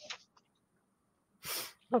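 A pause in conversation, mostly quiet, broken about a second and a half in by one short, sharp breath-like burst from a person, then speech begins at the very end.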